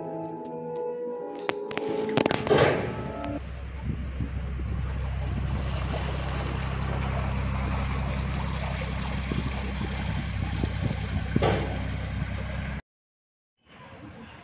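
Ringing, bell-like musical tones die away about three seconds in. A canal tour boat's engine then runs with a steady low hum while water churns along the hull, until the sound cuts off suddenly shortly before the end.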